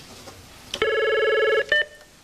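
Electronic desk-phone tone: a click, then a warbling electronic ring a little under a second long, ending in a brief beep.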